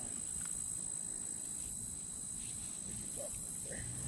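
Steady, unbroken high-pitched insect trill, as of crickets in the grass, over a low rumble of wind and handling noise.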